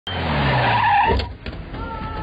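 Motor vehicle going by fast, with a falling engine note and tyre noise, loud for about a second and then dropping away. Steady music tones come in near the end.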